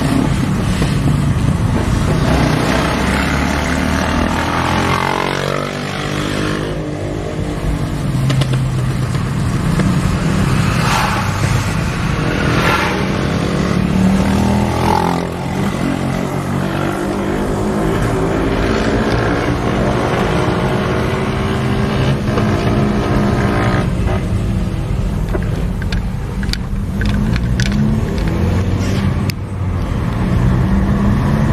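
Car engine and road noise heard from a moving vehicle, the engine's drone rising and falling in pitch as it speeds up and slows. A few short clicks or rattles come near the end.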